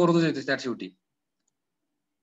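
A man speaking for about the first second, then his voice cuts off into dead silence.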